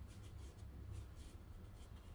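Faint soft scratching of an ink-loaded brush drawn across paper, a series of short light strokes, over a low steady hum.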